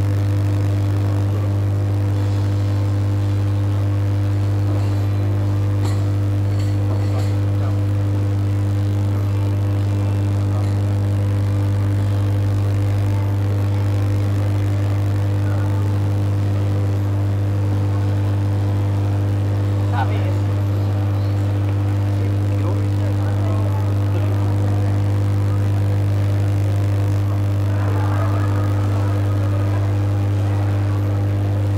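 A loud, steady low hum that never changes pitch or level, with faint chatter from people in the background.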